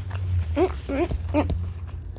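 A child's voice making three short pitched vocal sounds in quick succession, over scattered clicks of forks on plates and a steady low hum.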